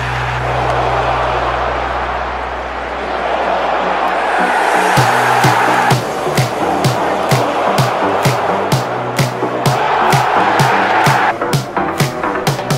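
Background electronic dance music: a sustained synth build-up, then a steady beat of about two kicks a second comes in about five seconds in.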